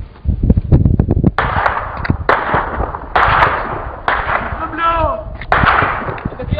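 Gunfire during a street clash: a rapid run of shots about a second in, then a string of loud shots or short bursts that start suddenly and ring on with echo.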